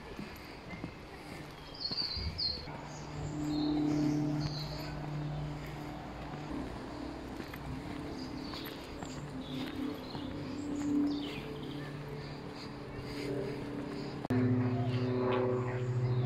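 Birds chirping briefly over low, steady held tones. The tones jump louder and change pitch about fourteen seconds in.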